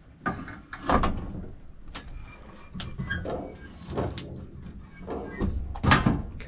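Portable sheet-metal brake bending a strip of sheet metal to a 90-degree angle: several sharp metal clunks from the brake's clamp and bending leaf, with scraping and rattling between them.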